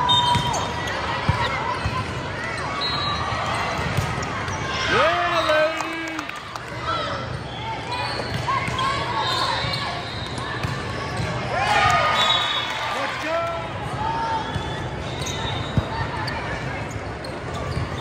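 Indoor volleyball rally: sharp hits of the ball among players' shouts and spectator chatter, echoing in a large hall.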